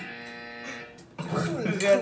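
A steady buzzing tone with even overtones, held flat for just under a second, then cut off. People talk over each other after it.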